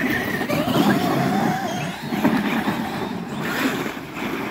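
Traxxas X-Maxx 8S radio-controlled monster trucks driving over snow and dirt: the electric motors whine, with a wavering pitch as the throttle changes, over steady tyre and ground noise.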